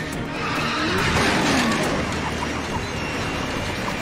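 Vehicle chase sound effects from a TV action scene: an engine note that rises and then falls, and tyres skidding, over dramatic score music.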